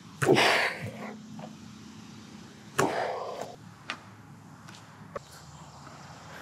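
Goalkeeping drill sounds: a short rush and thud of a keeper diving onto artificial turf, then a sharp ball strike about three seconds in followed by a brief scuffle, with a couple of faint taps later.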